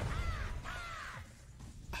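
Two caws from a giant cartoon bird in an animated show's soundtrack, each rising then falling in pitch, over a low rumble that fades out.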